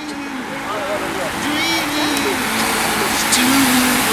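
A pack of racing bicycles streaming past close by: a steady rush of tyres on asphalt and air that grows louder as the bunch goes by.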